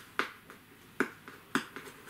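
Package being opened by hand: three sharp snapping clicks within about a second and a half, with fainter ticks between, as the packaging is pulled and worked open.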